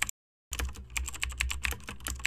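Rapid keyboard-typing clicks over a low steady hum, a sound effect for text being typed onto the screen. It breaks off into silence for a moment just after the start, then resumes.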